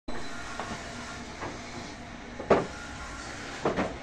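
A few short, irregular wooden knocks and clunks over steady background noise, the loudest about halfway through, two close together near the end: wooden sewing-machine boxes being handled.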